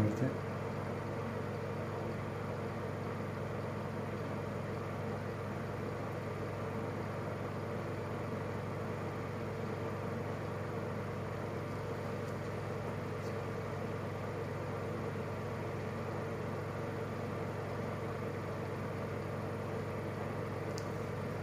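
A steady, unchanging hum with a faint hiss underneath.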